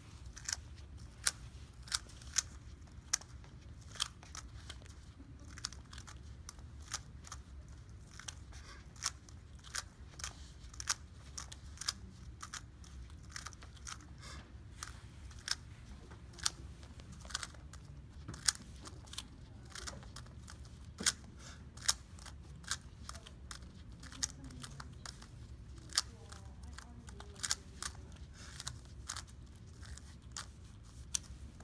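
Rubik's cube being turned by bare feet: irregular sharp plastic clicks as the layers turn, one to three a second, over a low steady room hum.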